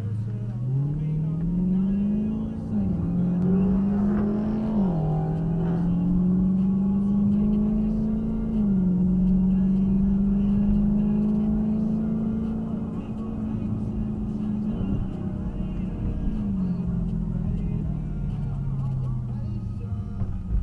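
Dodge Charger Scat Pack's 6.4-litre HEMI V8 under hard acceleration from a standing start, heard from inside the cabin. The engine note climbs and drops back at three quick upshifts in the first nine seconds, holds a steady pitch at speed, then falls away as the throttle is lifted near the end.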